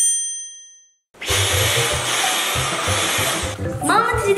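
A bright editing chime rings out and fades over about a second as a title card comes up. After a short silence comes a loud, steady rushing noise with an uneven low thudding, lasting about two and a half seconds.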